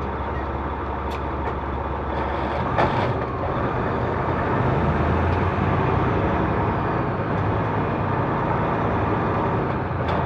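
Semi truck's diesel engine running as the truck rolls slowly forward, its low drone growing a little louder about four seconds in. A short sharp click comes about three seconds in.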